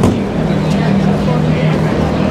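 City street traffic: a steady low engine hum from a vehicle running close by, with a brief click right at the start.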